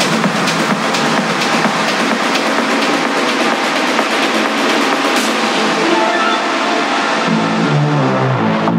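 Electronic dance music from a DJ set in a breakdown with the bass and kick cut out, leaving a bright wash of hiss and high percussion. A low synth riff comes in near the end.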